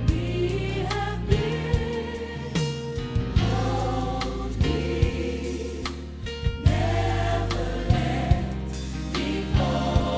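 Gospel music with a choir singing over a band, with regular drum hits.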